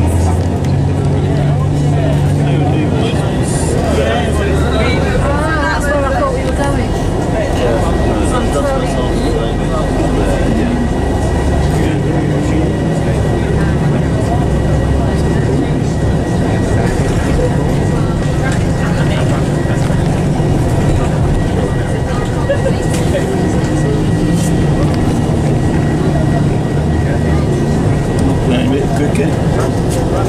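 Steady low rumble of a coach under way, heard from inside the passenger cabin, with indistinct passenger chatter over it.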